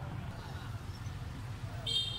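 Infant long-tailed macaque giving a short, high-pitched squeal near the end, over a steady low rumble.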